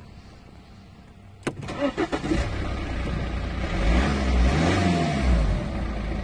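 A BMW's engine cranking and catching, preceded by a sharp click about a second and a half in. Its revs flare up and drop back before it runs on steadily.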